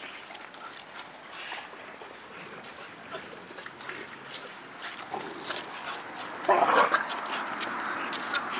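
Pit bulls playing and tugging a toy: scattered light clicks and scuffles, with one short, loud dog sound about six and a half seconds in.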